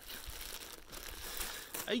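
Clear plastic packaging bag crinkling and rustling in irregular bursts as hands grip and move it.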